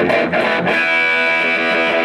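1959 Gibson Les Paul electric guitar played overdriven through a small 15-watt amplifier: a few quick picked notes, then a chord struck about two-thirds of a second in and left ringing.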